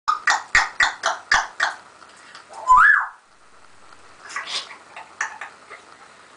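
African grey parrot calling: a quick run of about seven short, harsh calls, then a loud rising whistle about three seconds in, followed by a few softer calls.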